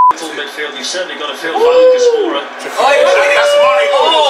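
A steady 1 kHz test tone that goes with a colour-bars card cuts off just at the start. Then comes a room of men's voices talking and calling out over each other, with long drawn-out calls about two seconds in and again near the end.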